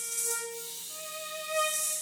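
Viola playing long bowed notes: one held note, then a step up to a higher held note about halfway through.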